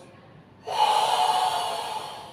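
Forceful Sanchin-kata breathing by a karate practitioner: after a quiet start, a long, loud hissing exhale begins about two-thirds of a second in and runs on for over a second.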